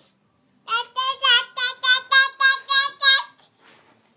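A toddler girl chanting one short syllable over and over in a high sing-song voice, about ten quick, evenly spaced notes in a row that start shortly after a second in and stop a little after three seconds.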